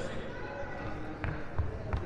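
A basketball bouncing on a wooden sports-hall floor, a run of low thumps starting about a second in, with people talking quietly in the background.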